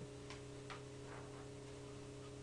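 Steady low electrical hum, with two faint clicks in the first second.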